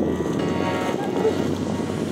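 Shallow lake water splashing steadily around a person's legs as he wades out toward the shore, with wind on the microphone.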